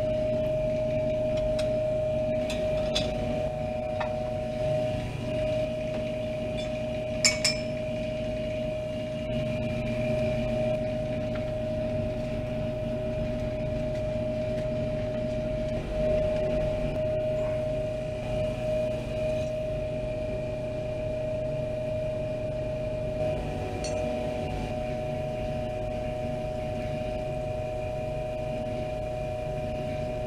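Steady machine hum with one constant tone, with a few light clinks of laboratory glassware, the clearest about seven seconds in.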